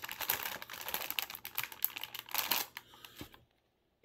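Plastic Halloween lantern handled close to the microphone: a dense run of small clicks and crackles from its plastic frame and clear panels, stopping about three and a half seconds in.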